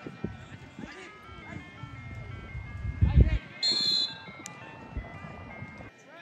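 A short, shrill referee's whistle blast about three and a half seconds in, just after a dull thump, over spectators' voices on the sideline.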